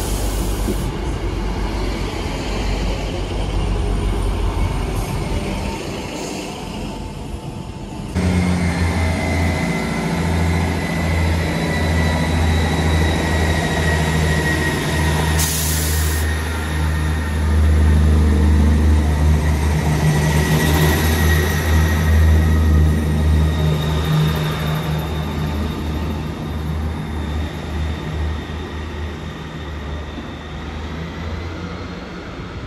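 Passenger multiple-unit trains at a station platform. First a train rumbles along the platform. From about eight seconds in, a steady deep drone with a faint high whine comes from a train at the platform, loudest midway, and a short hiss sounds about halfway through.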